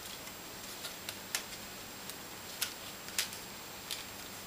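Cardstock sliceform pieces being woven through their slots by hand: a handful of small, sharp clicks and ticks from card and fingernails at irregular moments, over a faint steady hiss.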